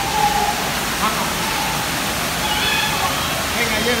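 Steady rushing of water, an even hiss with no rhythm or breaks, with faint voices over it.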